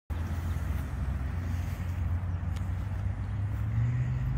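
Steady low engine hum, rising a little in pitch near the end.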